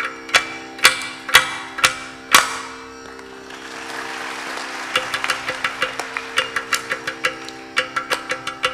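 Ghatam (clay pot drum) being played: five ringing strokes about half a second apart, a brief break filled with soft rushing noise, then a run of quicker strokes. A steady tambura drone runs underneath.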